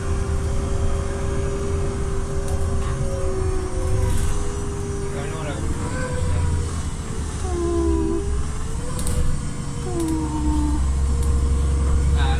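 Ride inside a moving city bus: a steady low rumble of the engine and tyres, with a humming drivetrain tone that dips and rises in pitch from about halfway through as the bus changes speed.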